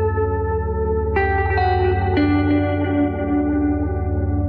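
Background music: sustained, echoing notes over a steady low drone, with new notes coming in about a second in and again around two seconds in.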